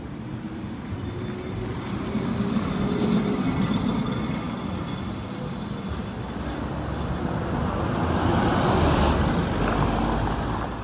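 Vintage Lisbon tram passing close by, its motor whine rising as its wheels roll on the rails, amid street traffic. The sound swells twice as vehicles go by and is loudest near the end.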